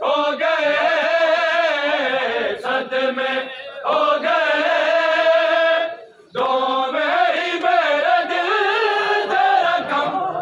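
Noha recitation: male voices chanting a lament in long, wavering held notes, breaking off briefly about six seconds in.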